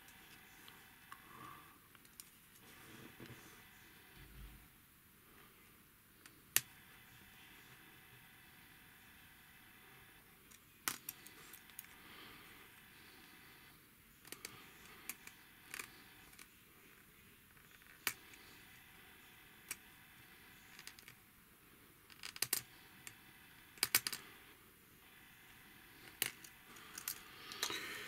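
Faint handling noises of a plastic syringe and thin plastic tubing being fitted together: scattered sharp clicks and small taps, some in quick clusters, over a low steady hiss.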